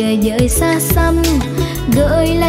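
A girl singing a Vietnamese song into a microphone over a live band, with a bass line and a steady drum beat.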